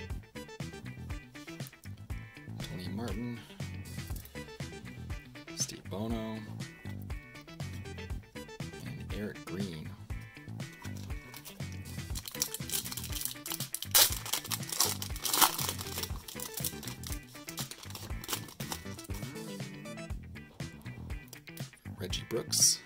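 Foil trading-card pack wrapper crinkling and tearing open, loudest between about 12 and 16 seconds in, over background music.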